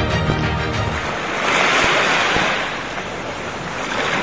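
Background music ends about a second in. A rushing sound effect of breaking surf then swells up and fades away.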